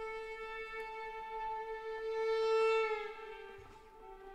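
String quartet music: a bowed violin tone held steady, which bends slightly down and fades about three seconds in, just before a lower held note begins.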